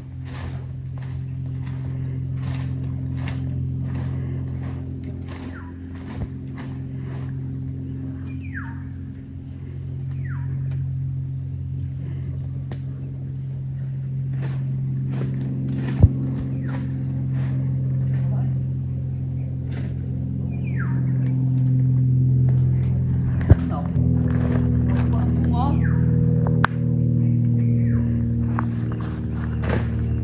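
Background music with a steady beat over held low chords that change every few seconds, with a couple of sharp knocks partway through.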